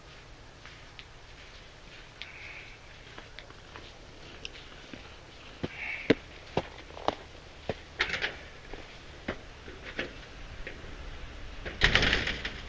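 Footsteps crunching on packed snow, about two steps a second, becoming louder and sharper about halfway through, with a louder knock and rustle at the very end.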